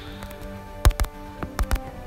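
Quiet background music with steady held notes, broken by a few short sharp clicks about a second in and again a little later.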